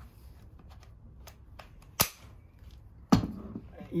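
Plastic clicks from an 18V Li-ion battery pack being handled and slid into place: light taps, then two sharp clicks about a second apart, the second the loudest.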